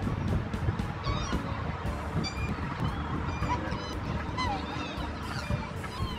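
Black swans calling: a scattering of short calls that rise and fall in pitch, over steady background music.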